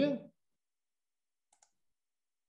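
The tail of a spoken word, then two faint, quick clicks of a computer mouse about one and a half seconds in.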